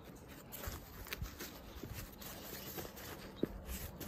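Faint rustling of a nylon bag and fabric strap being handled and tightened around a bicycle stem, with a few small scattered clicks and taps.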